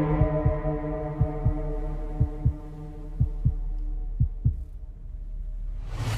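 Film-trailer soundtrack: a heartbeat-like double thump about once a second under a sustained, steady chord. The beats stop about two-thirds of the way through and the chord thins out.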